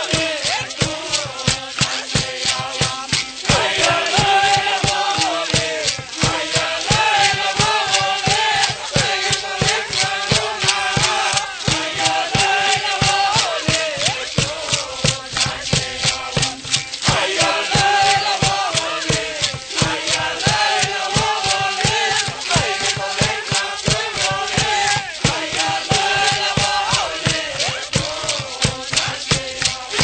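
Toba (Qom) indigenous choir singing together in a chant-like song, with gourd rattles and a hand drum keeping a steady, even beat. The song stops right at the end.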